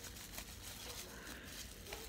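Faint rustling and crinkling of bubble wrap being handled and peeled off a stack of cards, over a low room hum.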